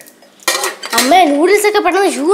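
Metal cutlery and dishes clinking in a short cluster of sharp clicks about half a second in.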